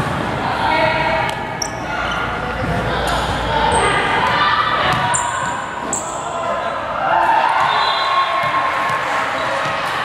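A basketball bouncing on a hardwood gym floor, several separate bounces, with people talking in the background.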